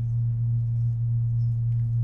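Deep, steady electrical mains hum in the church's sound or recording system, loud and unchanging, with no other sound over it.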